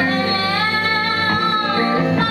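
Live band music: a woman holding one long sung note, her pitch swelling slightly and falling back, over electric guitar and a steady low bass note.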